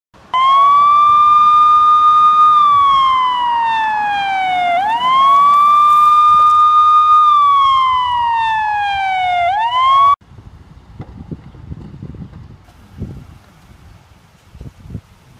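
Police siren wailing: the pitch climbs quickly, holds, then slides slowly down, two full cycles, and cuts off suddenly about ten seconds in.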